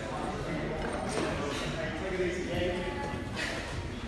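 Faint, indistinct voices echoing in a large gym hall, with a few light knocks.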